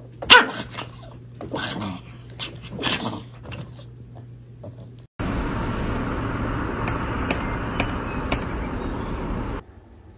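A dog barking in a few short bursts, the first the loudest. Then a steady rushing noise with four sharp clicks about half a second apart, which cuts off suddenly near the end.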